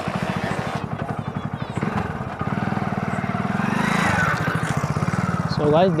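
A motorbike's small single-cylinder engine putters rapidly close by. It revs up a little past the middle and then eases off.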